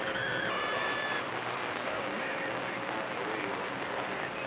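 CB radio receiver on channel 28 open on the band, giving a steady hiss of skip static with faint whistle tones near the start and faint, garbled distant voices beneath the noise.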